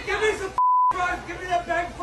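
A single short censor bleep, a steady pure beep about a third of a second long, blanking out a swear word in a man's shouted speech about half a second in.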